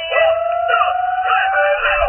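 Background music with a long, slowly rising, howl-like sliding tone over it.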